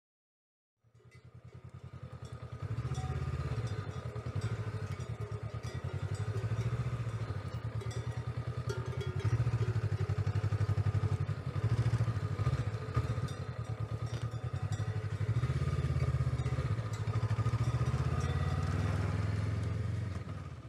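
Honda CB500X parallel-twin engine running at low revs on a dirt track, its loudness swelling and dropping as the throttle opens and closes. It fades in about a second in.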